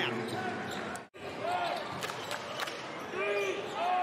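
Basketball game sound on an indoor hardwood court: a ball bouncing and sneakers squeaking on the floor. The sound drops out briefly about a second in at an edit.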